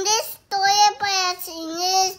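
A toddler's high-pitched, wordless sing-song vocalizing in drawn-out notes, with a brief break about half a second in.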